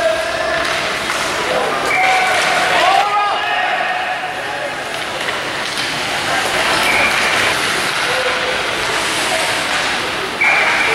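Indistinct voices calling out and chattering in an indoor ice rink over steady background noise, with a few brief high-pitched calls.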